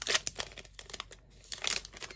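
Plastic-foil wrapper of a 2019-20 MVP hockey card pack being torn open and crinkled by hand, a run of crackling rustles that grows busier and louder near the end as the cards are pulled out.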